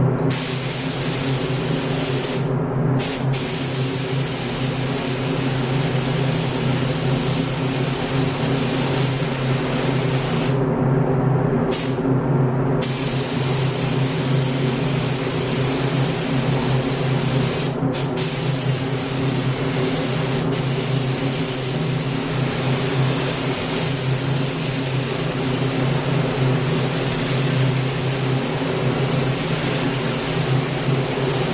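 A paint spray gun hissing as compressed air atomises paint onto a car fender and door. The hiss cuts off briefly a few times when the trigger is released, longest about ten seconds in, over a steady low hum.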